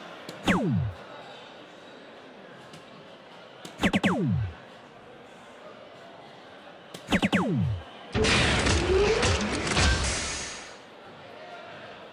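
Electronic soft-tip dartboard sound effects: three darts strike the board about three and a half seconds apart, each hit answered by a falling electronic tone. About eight seconds in a longer, louder noisy effect plays for a couple of seconds, the machine's award for a 140-point round.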